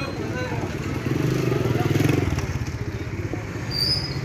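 Indistinct voices of several men over outdoor street noise, growing louder for about a second from about a second in.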